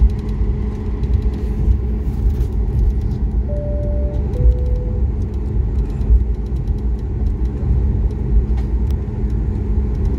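Steady low rumble of a jet airliner's engines and airframe heard inside the cabin as it taxis. About three and a half seconds in, a two-note cabin chime sounds, a higher note then a lower one.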